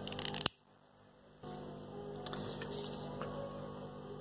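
A few sharp clicks, the last the loudest, as a disposable lighter is struck, then about a second of dead silence and a steady, faint electrical hum.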